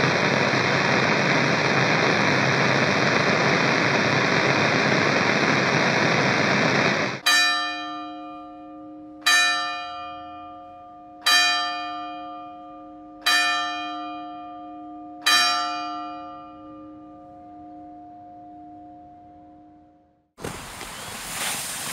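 Radio interference: a loud steady hiss of static that cuts off suddenly about seven seconds in. Then a church clock bell strikes five times, about two seconds apart, each stroke ringing on and fading away.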